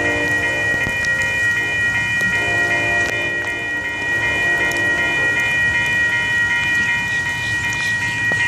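Grade-crossing bell ringing steadily, about three strokes a second, while an approaching diesel locomotive's horn fades out early on and sounds again briefly near the middle, over a low locomotive rumble.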